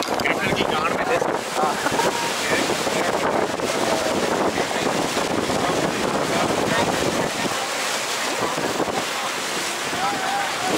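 Steady rush of wind buffeting the microphone and water washing past the hull of a boat under way.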